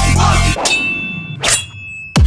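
Riddim dubstep track in a break: the heavy bass and beat cut out about a quarter of the way in, leaving a metallic clang that rings and fades. A short sharp hit follows near the end, just before the bass returns.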